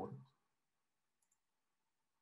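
A man's voice trailing off, then near silence with a faint, quick double click about a second in: a computer click advancing the presentation slide.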